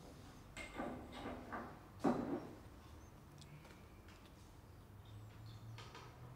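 Lab equipment being handled on a benchtop: a few soft knocks and a brief rustle in the first couple of seconds, the sharpest knock just after two seconds, then a few faint ticks.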